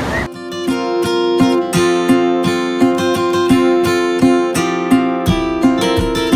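Background music: a strummed acoustic guitar in a steady rhythm, cutting in about a third of a second in and replacing the sound of wind and surf.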